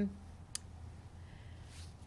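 A pause between speech: a low steady room hum with a single sharp click about half a second in.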